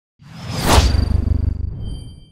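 Logo intro sound effect: a whoosh that swells to a peak just under a second in over a deep rumble that fades away, with a high ringing shimmer lingering after it.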